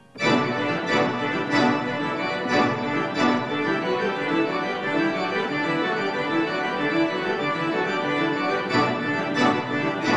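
Four-manual pipe organ playing a fast, busy passage that begins with a sudden full attack, with accented chords about every two-thirds of a second.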